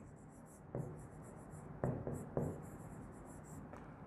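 Chalk writing on a greenboard: faint scratching strokes with a few light taps as letters are written.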